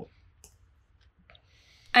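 Near silence: a pause in the talk with a couple of faint small clicks, such as mouth clicks near the microphone, before a woman's voice begins at the very end.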